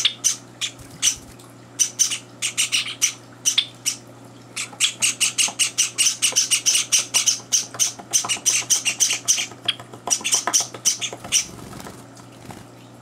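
Java sparrow chicks giving short, high begging chirps during hand-feeding. The chirps come scattered at first, then in a dense fast run of several a second through the middle, and thin out near the end.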